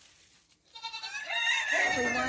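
A goat bleating: one long, wavering call that starts less than a second in and grows loud toward the end.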